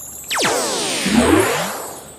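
Electronic magic-spell sound effect for a character vanishing: a high shimmering sparkle, then a sweeping downward glide of many tones that fades away near the end.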